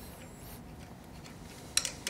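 Faint metallic ticks and clicks of the E61 group head's distribution plate being turned by hand as it is screwed back into place, with a sharper double click near the end.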